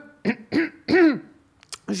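A woman clearing her throat: three short voiced sounds in the first second, then a pause.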